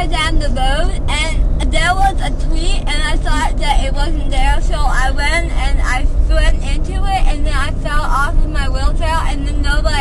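Steady low rumble of a road vehicle, heard from inside the cabin under continuous talking.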